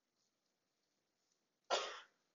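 Near silence, then a man coughs once, briefly, near the end.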